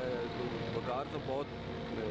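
A man's voice talking, with a steady low rumble underneath.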